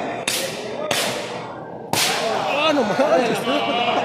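Three sharp, loud slaps about a second apart, each ringing on in the hall: the crack of lucha libre wrestlers' open-hand chops in the ring. Voices shout in the second half.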